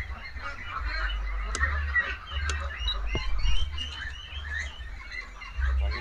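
A flock of Pekin ducks calling continually, with many short overlapping quacks, over a low rumble. A few sharp clicks come in the first half.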